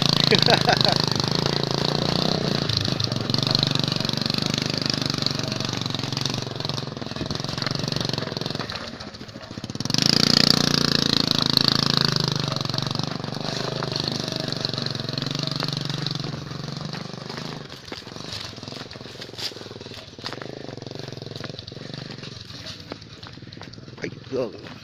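Motorcycle engine running under load as it tows a roped log down a dirt trail. It dips about nine seconds in, picks up again a second later, then fades over the last third as the bike moves away, leaving scattered light clicks.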